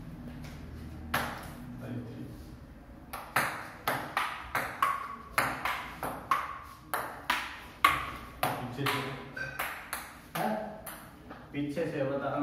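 Table tennis rally: the ball clicking off the paddles and the table in quick alternation, about three hits a second, starting about three seconds in and stopping near the end.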